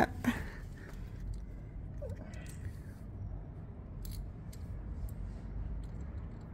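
Socket ratchet worked on a bolt under a motorcycle engine, giving a few faint, scattered clicks over a low background rumble.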